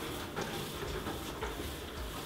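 Faint handling noise of a large plastic water-cooler bottle being shaken and rolled by hand, with a little methanol inside: low, even rustling and a few light knocks.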